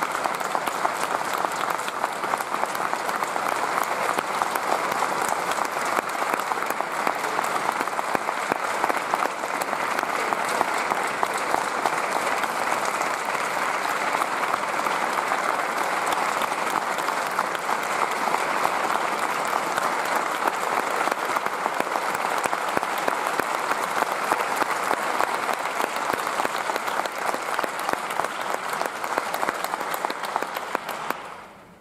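Audience applauding steadily: dense, even clapping that holds without letting up, in ovation for a concerto soloist's bow.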